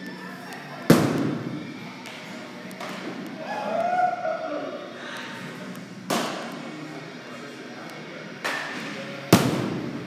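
Four sharp baseball impacts in a large indoor training hall, each with a short echo; the loudest come about a second in and near the end. A brief voice-like call sounds around the middle.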